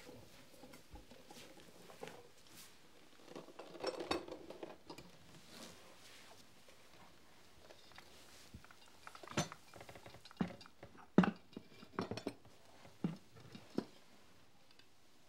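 Dishes and platters being set down on a wooden table: a few sharp clinks and knocks one after another in the second half, the loudest about eleven seconds in, after a soft rustle about four seconds in.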